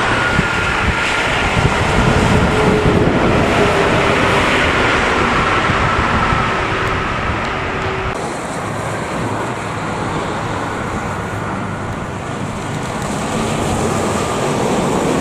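Highway traffic with an intercity coach passing: steady tyre and engine noise with a faint, slowly falling whine. About eight seconds in the sound changes to a lighter rushing of traffic, with wind on the microphone.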